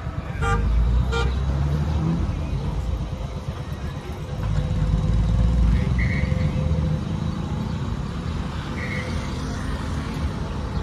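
Two short horn toots about half a second and a second in, over a low rumble with faint background voices.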